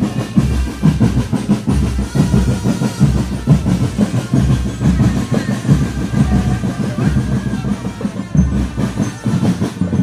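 Marching drum band drumming a fast, steady beat, with a faint melody line above the drums.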